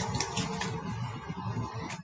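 A deck of playing cards being shuffled by hand: a continuous run of quick papery flicks and rustles.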